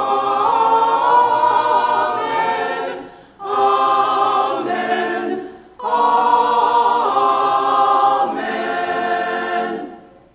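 Church choir singing a short sung response in three phrases, with brief breaks between them, the last phrase ending near the end.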